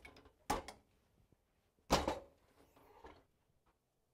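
Heat press being closed on the garment for a brief pre-press and then opened again: two short mechanical clunks about a second and a half apart.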